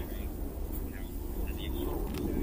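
Outdoor ambience: a steady low rumble with faint murmured voices of spectators.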